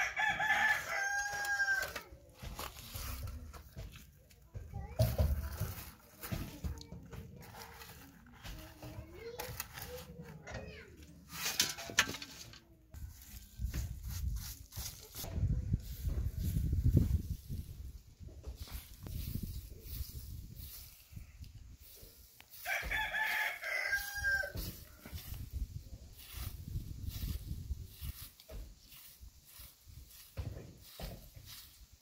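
A rooster crowing twice, once at the start and again about two-thirds of the way through. Between the crows there is the scraping of a spade and the sweeping of a straw broom on dry dirt ground.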